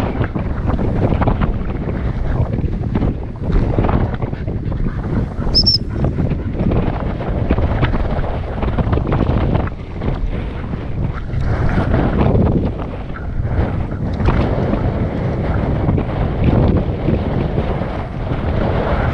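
Wind buffeting an action camera's microphone: a loud, gusty rumble that rises and falls throughout.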